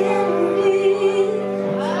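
Live bluesy rock band music: a woman singing a long held note over electric guitar and a steady low sustained tone.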